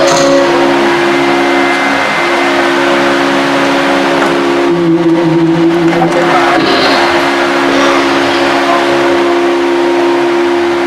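A steady musical drone of two held notes sounding together without a break, the kind held under devotional group singing, with a wash of sound above it.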